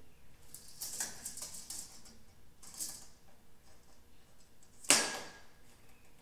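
A pencil scratching marks on a plywood sheet as a tape measure is moved across it, in a run of short scrapes over the first two seconds and another just before three seconds, then one sharp click about five seconds in.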